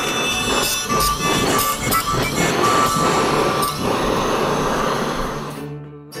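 A handheld power tool running against the canvas-covered wooden canoe hull, a dense scraping noise with some steady squealing tones, easing off near the end. Background music plays along with it.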